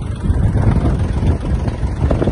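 Kubota L1-185 mini tractor's diesel engine running steadily at high revs, driving the rear rotary tiller through the PTO. The tiller blades are turning unloaded, clear of the ground.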